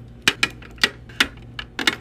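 Plastic makeup tubes and bottles being set down into a clear acrylic drawer organizer and tapping against it: a run of sharp, uneven clicks, about six in two seconds.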